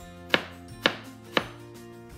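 Chef's knife cutting an onion into julienne strips on a plastic cutting board: three sharp knocks of the blade on the board, about half a second apart.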